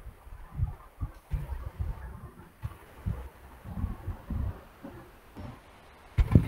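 Faint, irregular low thumps and rumble picked up by an open microphone on a video call, with no speech.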